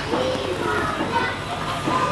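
Children's voices: young children chattering and playing, several voices overlapping.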